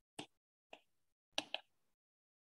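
Stylus tapping on a tablet screen while handwriting: four faint, sharp clicks, the last two close together about a second and a half in.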